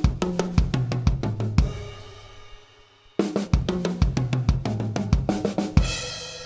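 Acoustic drum kit: a fill of quick stick strokes on the toms and snare mixed with bass drum kicks, played twice with a short pause between. Each run ends on a crash cymbal that rings out with the drums.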